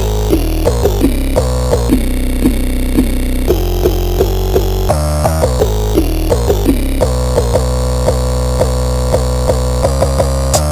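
Instrumental dark trap beat at 85 BPM: heavy sustained bass under a looping melody of short, repeating synth notes.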